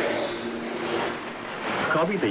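Shortwave AM broadcast heard through a Kenwood TS-50 receiver: music dies away at the start into a steady hiss of static with faint lingering tones. A voice begins right at the end.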